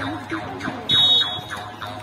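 A referee's whistle blows one short, shrill blast about a second in, over the voices of players and onlookers calling out during a volleyball match.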